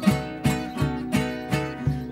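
Two acoustic guitars strummed together in a steady rhythm, about two and a half strokes a second, with a hand drum beating along underneath; an instrumental passage without singing.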